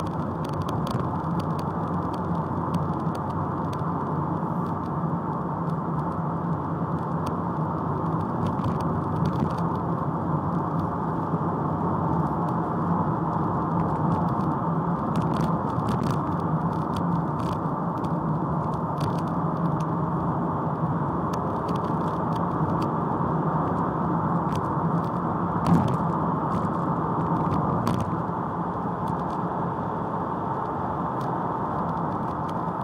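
Ford Mondeo Mk3 heard from inside the cabin, its engine running at a steady pitch with a constant hum, with scattered faint clicks and one sharp knock near the end.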